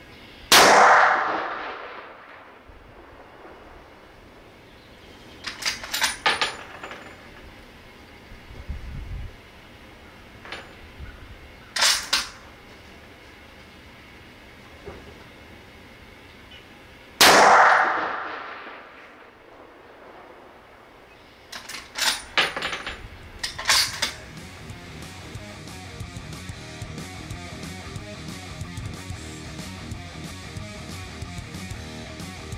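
Two rifle shots about seventeen seconds apart, each ringing away over a second or two. Between and after them come short bursts of metallic clicks and clacks.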